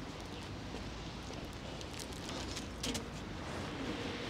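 Outdoor street ambience: a steady low rumble of distant traffic, with a couple of brief clicks about two and three seconds in.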